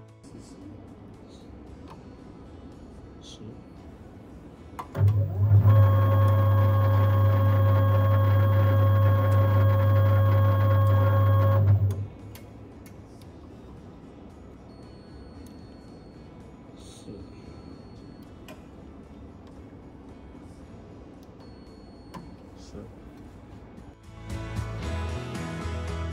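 Tap-changer motor drive unit running through one tap change: a steady electric-motor hum that starts suddenly, runs for about seven seconds, then stops.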